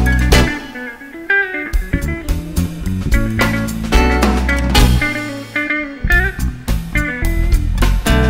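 Instrumental passage of a live jazz quartet: acoustic and electric guitars playing quick plucked lines over bass guitar and drums, with sharp percussive accents.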